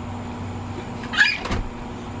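A young child's short, high-pitched squeal about a second in, followed at once by a low thump, over a steady low hum.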